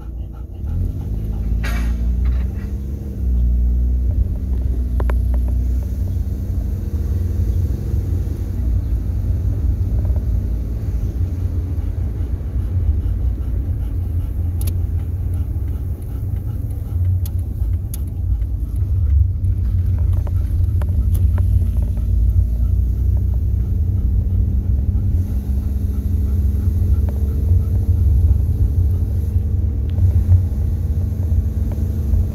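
A car driving, heard from inside the cabin: a steady low rumble of engine and tyres on the road. The engine note climbs about a second in as the car pulls away and picks up speed.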